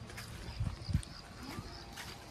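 Faint outdoor background with two soft low thumps about a third of a second apart, a little under a second in.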